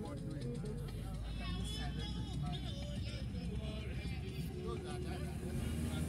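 Steady low road and engine rumble heard from inside a moving car, with faint indistinct voices over it.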